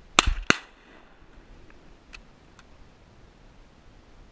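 Two shotgun shots fired in quick succession, about a third of a second apart, followed by a few faint clicks.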